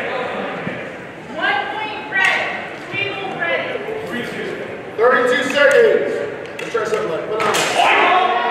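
Indistinct voices talking in a large, echoing hall, with a few sharp clicks near the end.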